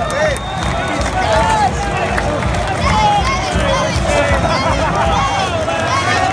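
A crowd of many voices talking and calling out over one another, with several high-pitched voices standing out.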